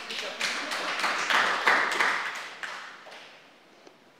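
A small audience clapping: a dense patter of hand claps that builds, then dies away about three seconds in.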